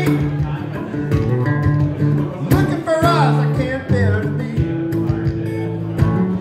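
Acoustic guitar played live, ringing chords strummed and picked in a steady song accompaniment.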